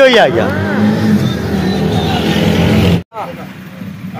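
A motor vehicle's engine running close by, a steady hum that cuts off abruptly about three seconds in.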